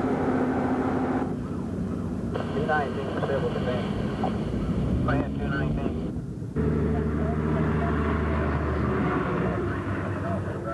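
Location sound under edited footage: indistinct voices over a steady engine-like hum, with abrupt changes in the sound at the cuts, about a second in, after two seconds, and past six seconds.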